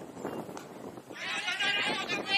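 A man's loud, high, wavering shout starting about a second in and held, as cricket players call out on the field, with lower voices just before it.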